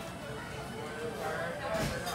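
Other diners talking in a restaurant, with a brief clatter near the end.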